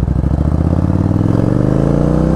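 Yamaha Virago 1100's air-cooled V-twin running through aftermarket Vance & Hines pipes, pulling under acceleration in gear with the revs climbing steadily.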